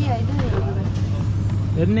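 A woman speaking in short phrases over a steady low hum, with a pause in the middle.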